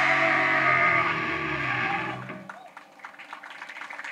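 A heavy metal band's final chord ringing out on distorted guitar and bass with cymbals. It cuts off about two and a half seconds in, leaving scattered shouts from the crowd.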